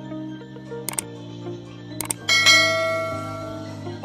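Background music with two short click sound effects, about one and two seconds in, then a bright bell ding that rings and slowly fades: the stock click-and-bell sound effects of a YouTube subscribe-button animation.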